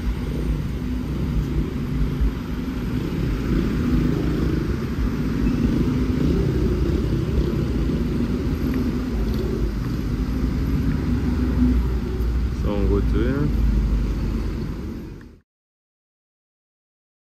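Road traffic of trucks and cars, a steady low engine rumble, with a brief voice about 13 seconds in; the sound cuts off suddenly shortly before the end.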